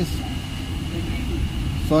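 Inside a passenger train coach: a steady low rumble with a thin, steady high whine above it.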